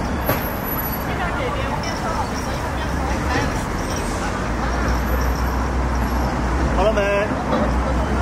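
Street ambience: a steady low rumble of road traffic under the background chatter of several people. One voice stands out more clearly about seven seconds in.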